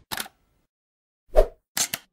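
Short sound effects of an animated logo intro. A brief click comes first, then a louder, deep plop about a second and a half in, then a short crisp tick-like burst just before the end.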